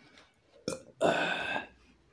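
A man burps once, a short burp about a second in, while gulping down cups of raib (Moroccan fermented milk). A short click comes just before it.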